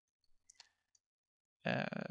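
A few faint computer keyboard keystrokes in the first second, then a spoken 'uh' near the end.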